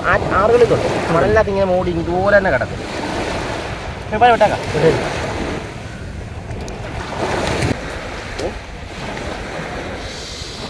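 Small waves washing up on a sandy shore in a steady rush, with wind buffeting the microphone.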